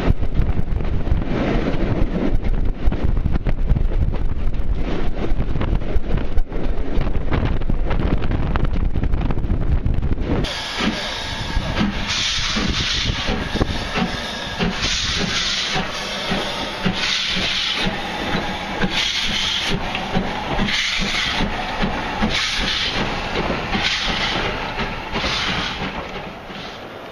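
For about the first ten seconds, the rumble of a train in motion on board behind a steam locomotive, with rapid clicks of wheels over the track. Then a steam locomotive, an LMS Stanier 8F 2-8-0, working slowly with loud hissing exhaust beats about once a second.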